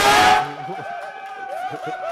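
A small group of people cheering and screaming with excitement as they hear they have won. It opens with a loud shout, then goes on as overlapping high-pitched yells and whoops.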